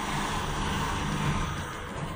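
Elevator car travelling, a steady low hum and rumble inside the cabin.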